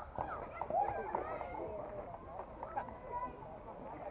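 Several people's voices calling out and chattering across an outdoor softball field, overlapping and not close enough to make out words.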